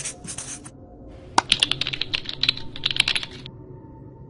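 A burst of rapid, irregular clicking like typing on a computer keyboard, lasting about two seconds and starting a little over a second in, after a short hiss at the very start.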